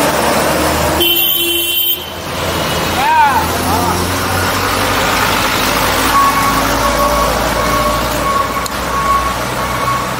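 Busy city street traffic heard from a moving bicycle: vehicles running close by with a horn toot and street voices. A short warbling tone sounds about three seconds in, and a repeating short beep, about two a second, starts about six seconds in.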